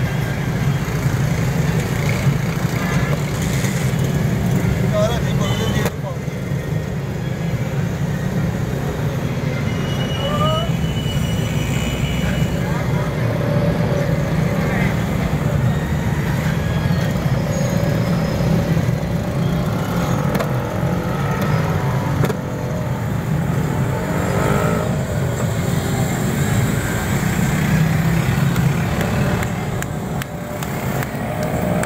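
Roadside street noise: a steady low rumble of passing traffic with indistinct voices mixed in.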